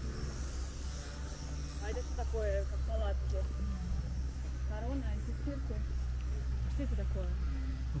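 Soft, brief snatches of people's voices over a steady low rumble.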